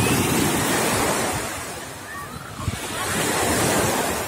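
Small sea waves breaking and washing up a sandy beach, the surf swelling twice.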